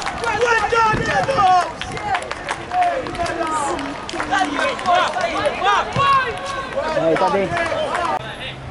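Several voices shouting and calling out during a football match, many short overlapping shouts, with a few sharp knocks among them.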